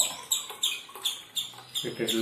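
Steel spoon scraping against the rim of a steel pot about three times a second, sharp and squeaky, as juice is poured from the pot into a glass.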